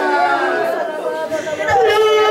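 A woman praying aloud into a microphone, her voice rising and falling in pitch and holding one long vowel near the end.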